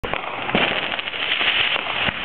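Many fireworks going off at once: a dense, continuous crackle of pops with several louder bangs scattered through.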